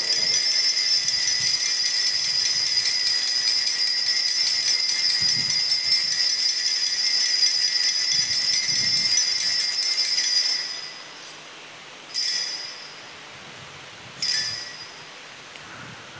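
Altar bells rung at the elevation of the consecrated host: a sustained jingling peal for about ten seconds, then two short single rings.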